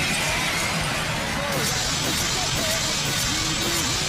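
Action-show soundtrack mix: background music under special-effect sounds, with a steady rushing effect that grows stronger about a second and a half in.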